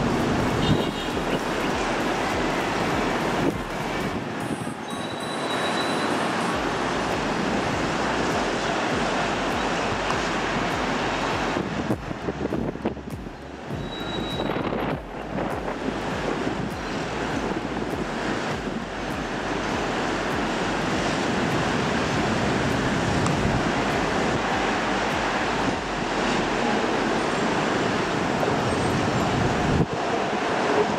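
Steady rushing noise from wind buffeting a handycam's built-in microphone on an open rooftop, mixed with the distant hum of city traffic. It dips briefly a few times.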